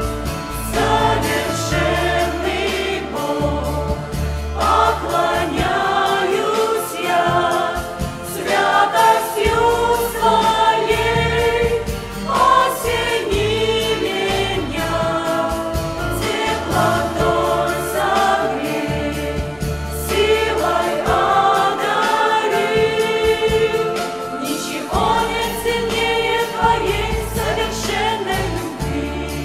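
Mixed choir of adult and children's voices singing a worship song, with a sustained low bass underneath.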